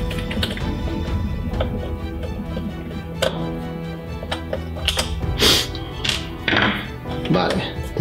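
Background music with a scatter of sharp plastic clicks and knocks and a couple of brief scrapes, from hands prying the plastic cover off a Roborock S50 robot vacuum's laser distance sensor.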